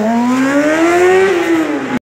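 Stunt motorcycle's engine pulling hard as the bike accelerates away, its pitch rising steadily for over a second, then dropping near the end.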